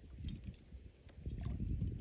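Wind buffeting the microphone in an uneven low rumble, with a few faint scattered clicks and ticks.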